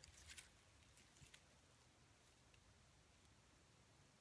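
Near silence: room tone, with a few faint soft ticks in the first second and a half.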